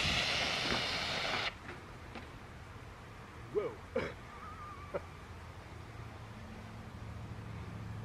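Amerex B410 2.5-pound Purple K (potassium bicarbonate) dry chemical fire extinguisher discharging: a loud, even hiss of powder being sprayed onto a fire. The hiss cuts off suddenly about one and a half seconds in as the handle is released.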